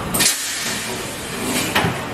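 Semi-automatic PET blow-moulding machine releasing compressed air in short, sharp hisses, one just after the start and another near the end, over a steady din of air and machinery.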